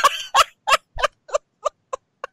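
A person laughing in a run of short, evenly spaced bursts, about three a second, slowly fading.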